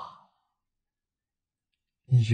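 A man's voice trails off in the first moment, then near silence: a pause in the speech.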